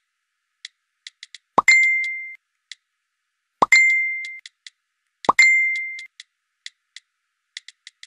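Phone notification chime, a quick rising pop into a ringing ding, sounding three times about two seconds apart as replies come in. Short, faint, irregular clicks fall in between.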